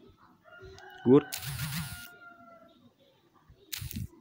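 A voice says "good" once, about a second in. Behind it a faint call holds one steady note for about two seconds over a short burst of hiss, and a few brief noisy bursts come near the end.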